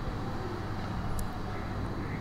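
Steady low background hum of the recording room, with a single faint click about a second in.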